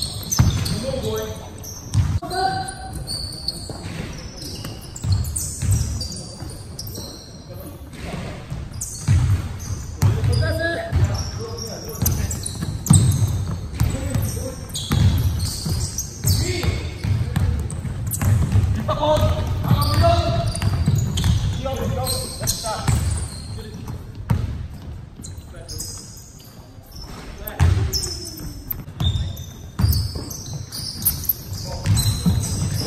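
Basketball bouncing on a hardwood gym floor during play, repeated knocks ringing in a large hall, with players' voices calling out now and then.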